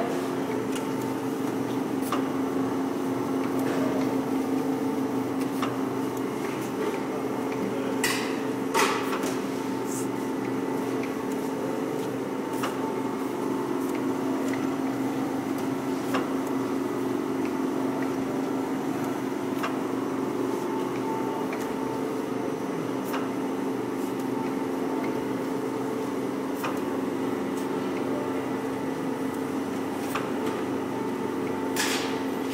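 Daub Slim vacuum dough divider running: a steady hum from its built-in vacuum pump, with light mechanical clicks every couple of seconds and two louder knocks about eight seconds in.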